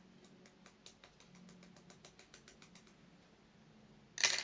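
Faint run of light clicks, about six a second, from thin wooden sticks handled in the hand, stopping about three seconds in.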